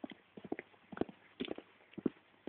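Footsteps tapping on hard ground while walking: about six short, sharp, irregularly spaced taps.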